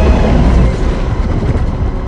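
Deep, heavy rumble from a monster-battle sound-effects mix, strongest in the low bass and thinning out toward the end.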